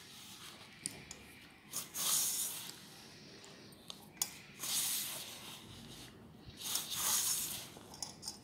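Hands rubbing and squeezing dry wheat flour and mashed boiled potato together in a steel bowl: a soft, gritty rustle in three bursts, with a few faint clicks between them.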